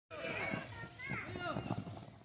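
Several faint, overlapping voices calling out across a football pitch, children's voices among them.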